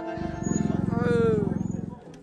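The last held chord of a brass-and-accordion band dies away. Then a person gives a drawn-out, low, rasping vocal sound that slides down in pitch near its end.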